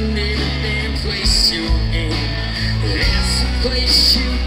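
Live country-rock band playing, with electric guitars, acoustic guitar, bass and drums.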